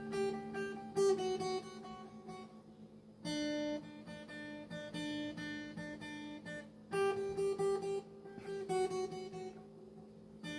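Acoustic guitar played with picked single notes: a short riff repeated three times, starting afresh about every three and a half seconds.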